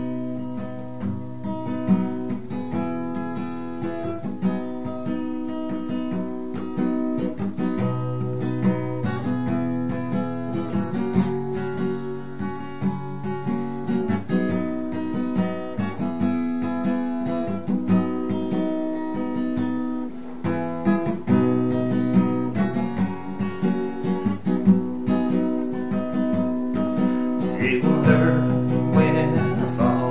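Steel-string acoustic guitar strummed in a steady rhythm through changing chords, the instrumental opening of a country song. A man's singing voice comes in near the end.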